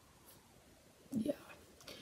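Near silence: quiet room tone, then a woman says a soft "yeah" about a second in.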